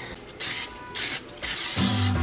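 Aerosol cooking spray hissing in three short bursts, greasing a glass 9x13 baking dish. Guitar music comes in near the end.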